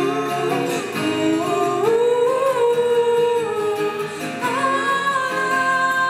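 Two female voices singing long, wordless held notes in harmony, gliding from note to note, over a strummed acoustic guitar.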